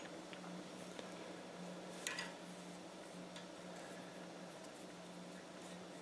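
Faint light ticks and clicks of wire being bent by hand around a steel pin in a drilled block clamped in a bench vise, with one slightly louder click about two seconds in, over a steady low hum.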